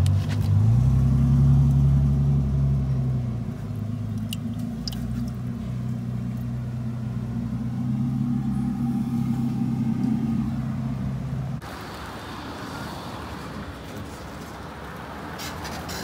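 A car engine idling close by, with a steady low hum whose pitch rises slightly about half a second in and drops back after about three seconds. About two-thirds of the way through it stops abruptly, giving way to quieter, even outdoor noise.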